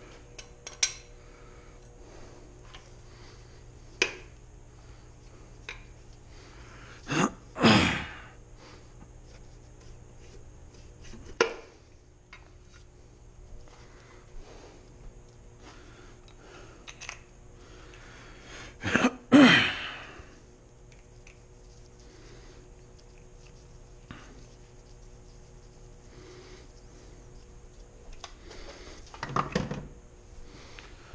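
Metal engine parts and hand tools clinking and knocking as an engine's bottom end is taken apart: a few sharp single clinks spread out, with two longer, louder noisy sounds, one about a quarter of the way in and one around two-thirds through.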